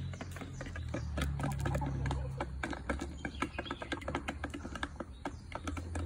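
Chickens pecking at feed: a rapid, irregular run of sharp beak taps on a plastic feed dish and the ground, over a low steady hum.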